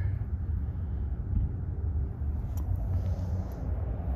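Steady low outdoor rumble with no clear single source, running without a break under a few faint ticks.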